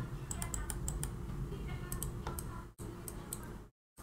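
A run of light, quick clicks from a computer keyboard and mouse over a low steady hum. The sound drops out briefly near the end.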